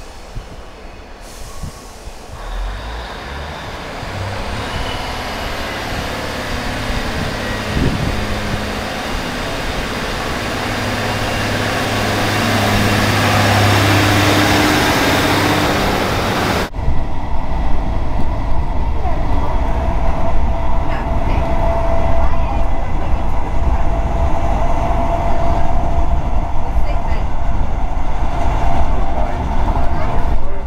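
Class 153 single-car diesel railcar drawing in along the platform, its underfloor diesel engine and wheels growing steadily louder as it comes alongside. About two-thirds of the way through it cuts off abruptly to the steady rumble and rushing noise of riding inside a moving train.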